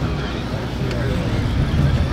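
A steady low rumble, like wind on the microphone, with people talking faintly in the background.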